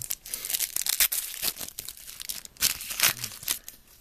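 Foil wrapper of a trading-card pack being torn open and crinkled: a crackly rustle with several sharp, louder rips, dying away shortly before the end.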